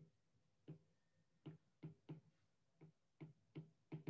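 Faint, slightly uneven taps of a stylus on a tablet screen while handwriting, about two to three a second.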